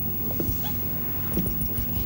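Faint whimpering, with short whines about half a second and a second and a half in, over a low droning film soundtrack.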